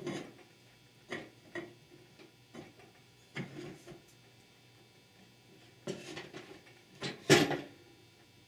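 Scattered light clicks and knocks of steel transmission parts as a Chrysler 46RE overdrive direct clutch housing is slid onto the ring gear and output shaft assembly and handled. A louder knock near the end comes as the assembly is set down on the wooden bench.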